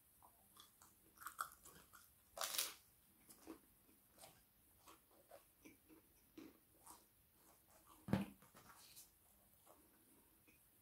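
A person chewing and biting food close to the microphone: soft wet clicks throughout, one louder crunchy bite about two and a half seconds in, and a dull thump about eight seconds in.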